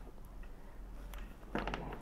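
Faint small clicks and rustles of thin hookup wires being handled and twisted together, over a steady low hum, with a brief soft sound near the end.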